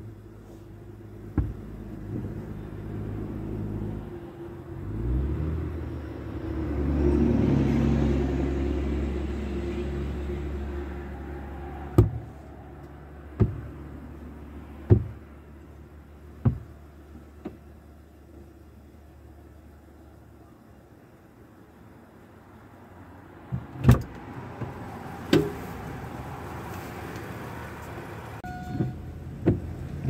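A motor vehicle engine running nearby, its pitch rising about five seconds in, then settling and fading away. Sharp knocks come at intervals, with a louder thump about two-thirds of the way through.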